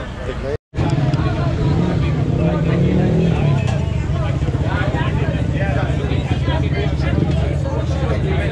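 Busy street at night: a steady low rumble of motor-vehicle engines running close by, with a slight rise about three seconds in, under the chatter of people's voices. A brief dropout about half a second in breaks the sound.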